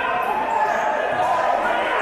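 Spectators' many voices shouting and calling at once, echoing in a large indoor sports hall during a futsal match.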